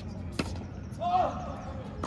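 A tennis ball is struck once, a sharp crack about half a second in. About a second in comes a short vocal exclamation.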